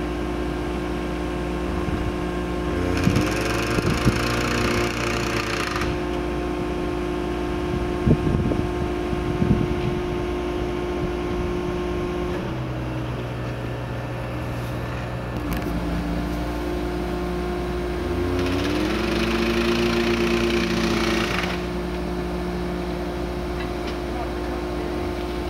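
Engine of a DESEC TL 70 track-laying machine running steadily. Twice, for about three seconds each, its note rises and a hiss comes in as it works. A few sharp metallic knocks fall around the middle.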